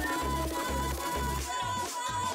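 Electronic background music with a bass beat pulsing about twice a second under a long held high note.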